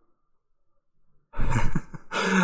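A pause, then, about a second and a half in, a man's loud breathy sigh.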